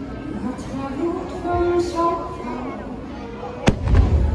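Fireworks show soundtrack of music and voices playing over loudspeakers, with one sharp firework bang near the end followed by a low rumble.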